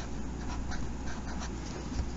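Faint scratching of a felt-tip Sharpie marker writing digits on paper, over a low steady room hum.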